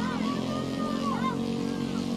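Open-air pitch-side sound: a steady low motor hum, with distant voices calling out briefly in the first second or so.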